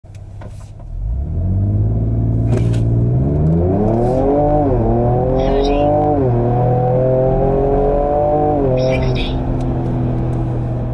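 Ford Ranger Raptor's twin-turbo V6 under full-throttle acceleration from a standstill, heard from inside the cab. It launches about a second in, and the engine climbs in pitch and drops back at three upshifts.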